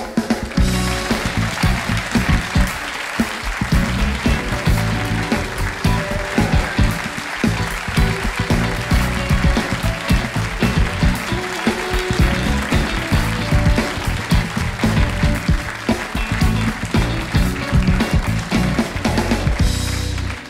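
A live band with drums and bass playing upbeat walk-on music over steady audience applause.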